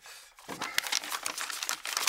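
Tissue paper being crumpled and crinkled in the hands: a dense run of small crackles starting about half a second in.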